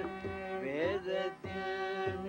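Carnatic vocal music in raga Mukhari: an elderly man singing with violin accompaniment over a steady tanpura drone, with mridangam strokes.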